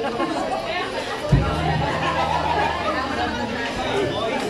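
Chatter of people talking in the room, with one low bass guitar note plucked about a second in and left to ring for a second or two.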